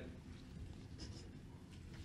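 Quiet room tone with a steady low hum, and a faint light rustle about a second in.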